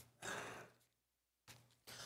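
A man's soft, short exhale close to the microphone, lasting about half a second, with faint clicks just before it and about a second after it.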